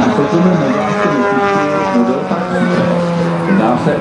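Two-stroke petrol engine (a 3W) of a large-scale radio-controlled Pitts Special biplane running in flight. Its pitch falls gradually over the first few seconds.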